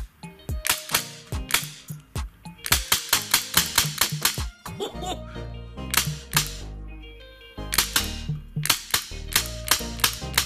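An airsoft gun firing tracer BBs, sharp cracks shot after shot, at times about five a second, over background music.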